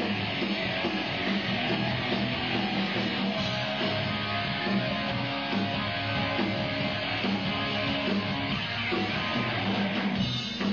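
Live rock band playing a song with strummed electric guitars to the fore over bass, steady and unbroken.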